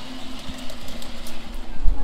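Garden-scale model train running along its track: a small electric motor's steady hum with light clicking from the wheels on the rails. There is a low thump near the end.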